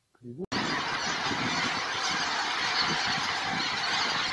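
A large flock of wild geese calling in flight: many overlapping honking calls that merge into one dense, steady din, starting abruptly about half a second in.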